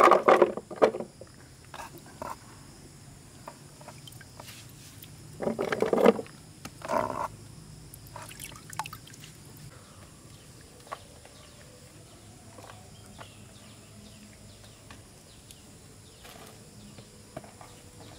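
Water sloshing and splashing in a plastic basin as sliced figs are washed by hand, in a few short bursts, over a steady high drone of insects. Later come only faint light knocks as plastic tubs and glass jars are handled.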